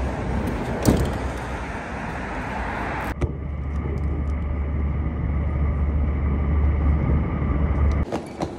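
Outdoor traffic noise with a single sharp knock about a second in. About three seconds in it changes to the steady low rumble of a moving vehicle heard from inside, which grows slightly louder.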